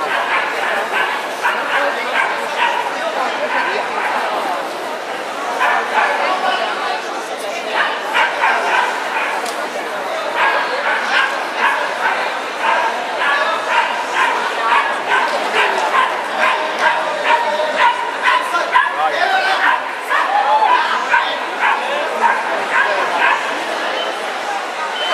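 A small dog barking in quick, high yaps, several a second, through most of the stretch, while it runs an agility course.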